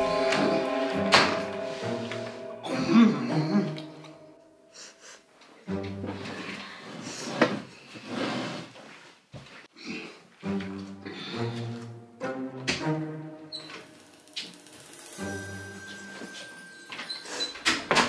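Background music in short phrases with brief pauses between them, punctuated by sharp knocks or thumps.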